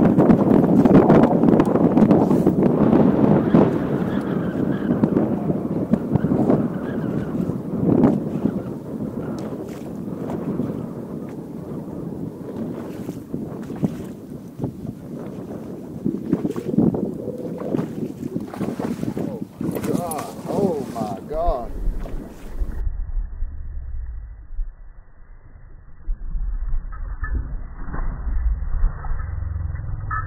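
Wind buffeting the microphone of a camera mounted on a bass boat, with water slapping the hull and many short knocks. About two-thirds of the way through, the sound turns dull and low, mostly a rumble of wind.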